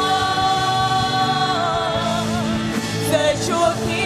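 Live worship team of singers with band accompaniment performing a Christian worship song. A long sung note is held for about the first second and a half, then the melody moves on over the band.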